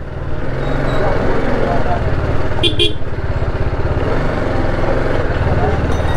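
Sport motorcycle engine running at low speed with a steady low hum, with a short vehicle-horn toot a little before halfway through.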